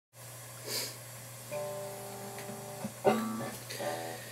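Acoustic guitar with three single notes plucked, each left ringing, over a low steady hum, with a short noise shortly before the first note.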